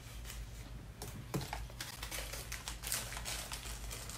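Small, irregular clicks and light rustling as a little gemstone bottle pendant and its cord are handled, with a few sharper taps among them.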